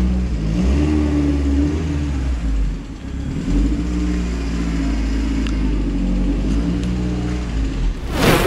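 Volkswagen Polo 16V's four-cylinder petrol engine running at low revs while the car creeps forward, its pitch stepping up and down several times with the throttle.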